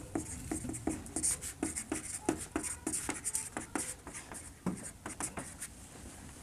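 Marker pen writing on a whiteboard: a quiet run of many short, quick strokes as a line of text is written.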